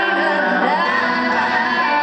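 Live pop concert music played loud through an arena sound system: a woman's voice sings sliding, drawn-out notes over dense amplified backing.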